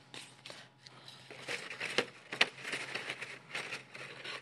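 Corrugated paper rustling and crackling as a paper hat brim with folded tabs is worked into the hat by hand, with two sharper crackles about halfway through.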